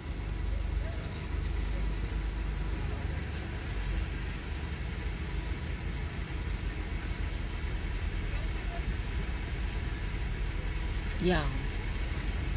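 A car idling, heard from inside the cabin: a steady low rumble. A voice is heard briefly near the end.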